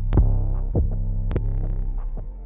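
Deep 808 bass samples from a trap drum kit, auditioned one after another. Each is a sustained low bass note that starts with a sharp click, a little under two hits a second.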